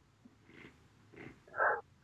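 A man's breathing between phrases: two faint breaths, then a louder short intake of breath about a second and a half in.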